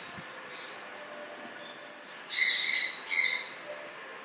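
A bird calling twice, two short high-pitched calls a little under a second apart, loud over a steady background hum.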